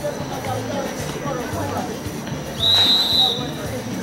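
A referee's whistle blown once in a short, high, steady blast of under a second, about two-thirds of the way through, over crowd chatter.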